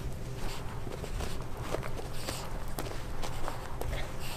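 Italian greyhound rolling and squirming on its back on a rug: its body rubbing over the carpet makes a scuffing, rustling sound, with scattered small clicks and taps.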